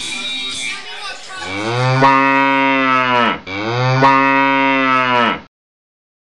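A cow mooing twice: two long moos back to back, each dropping in pitch at its end, after the last of the music fades. The sound then cuts off to silence.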